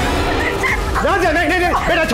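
A young girl crying out in distress, a run of high-pitched rising-and-falling wails starting about half a second in.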